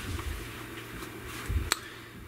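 Small hardware handled on a workbench: one sharp click about three-quarters of the way through, over a low hum.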